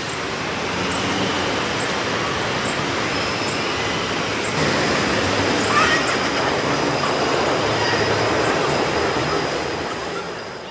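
Steady, loud roar of city street noise with traffic running, a faint high whine and a light tick a little under once a second.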